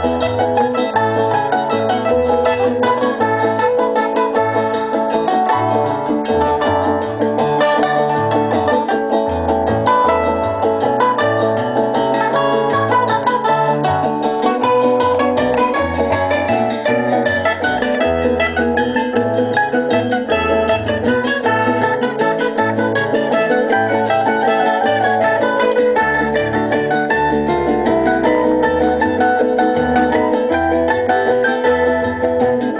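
A live band playing Curaçaoan tipiko music: plucked string instruments play a melody over a steady, moving bass line.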